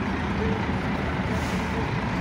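Intercity coach's diesel engine idling with a steady low hum, with a brief soft hiss near the middle.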